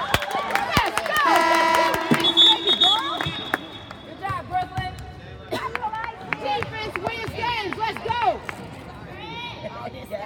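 Spectators' voices calling out over a basketball game, with several sharp ball bounces on the hardwood in the first second and a steady high referee's whistle blast about two to three seconds in.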